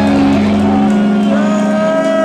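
Live band's distorted electric guitars and bass held and ringing out with amplifier feedback, a sustained wall of sound rather than a beat. A low bass note drops out just under a second in, and a new set of high held feedback tones swells in about a second and a half in.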